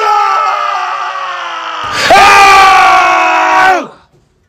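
A man screaming in anger: one long held scream, then a second, louder scream about halfway through that is cut off abruptly just before the end.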